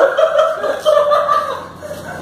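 A person chuckling off-mic-close, a run of short laughs that fades out about a second and a half in.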